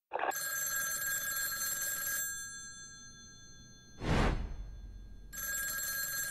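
Telephone bell ringing: a ring of about two seconds that dies away, then starts again near the end. Between the rings, about four seconds in, comes a short whoosh.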